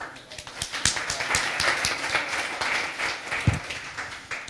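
Audience applauding. The clapping swells just after the start and tapers off near the end.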